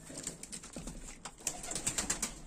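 Domestic pigeons cooing low, with several sharp clicks scattered through, the loudest in the second half.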